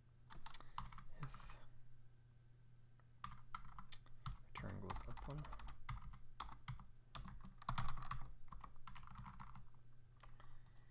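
Typing on a computer keyboard: a short run of keystrokes, a pause of about a second, then a longer, busier run of keystrokes.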